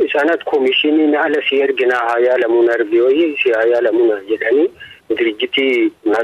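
A voice speaking continuously in Afaan Oromoo, in the narrow, telephone-like sound of a radio news broadcast, with faint clicks over it and a short pause just before the fifth second.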